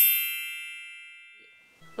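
A bright, bell-like chime struck once, its several high ringing tones fading away evenly over nearly two seconds: an edited-in sound effect accompanying a title card.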